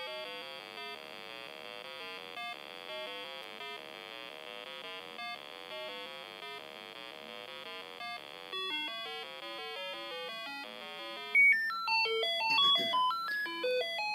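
An Arduino Uno plays a looping sequence of short, fast electronic beeps through a speaker, the notes stepping up and down in pitch. About eleven seconds in, the notes get louder and jump higher: the loop has restarted at a new base pitch set by the potentiometer, which is read only once each full pass of the sequence is done.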